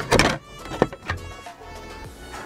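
Background music, with a short loud rustle near the start and a click a little under a second in as a clear plastic visor is drawn out of a cloth pouch.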